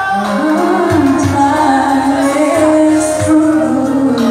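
A woman singing a slow pop ballad live into a handheld microphone, holding long notes that glide between pitches, over musical accompaniment.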